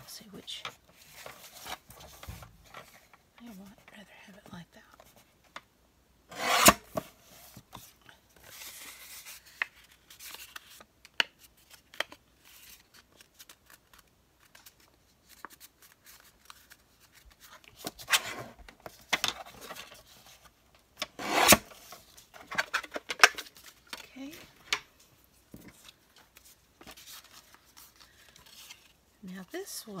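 Sliding-blade paper trimmer cutting patterned paper, a short sharp rasp of the blade running along its rail, with paper rustling and handling in between. The loudest strokes come about 7 seconds in and again about 21 seconds in.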